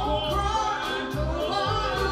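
Live band playing a slow R&B ballad: a woman sings lead over bass guitar, drums, electric guitar and keyboards.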